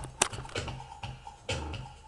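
A bass test track played through a 10-inch, 100 W, 4-ohm Raveland subwoofer: a beat of short, low bass notes with sharp clicks on top.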